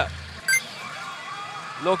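Pachinko machine's electronic sound effects: a short bright chime about half a second in, over a faint steady electronic soundtrack. A man's voice says a number near the end.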